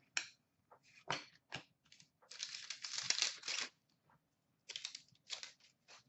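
Trading cards and their packaging being handled by hand: a few short flicks of card stock, then a longer papery rustle from about two to four seconds in, and a few more brief rustles near the end.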